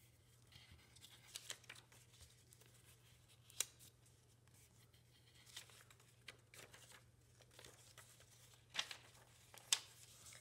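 Faint rustling and creasing of a sheet of paper being handled and folded into wings, with a few sharp clicks: the loudest about three and a half seconds in, two more near the end.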